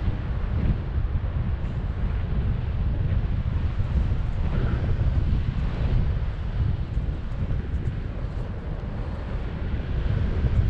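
Wind from the flight buffeting the action camera's microphone under a tandem paraglider: a steady, deep, fluttering rush of air.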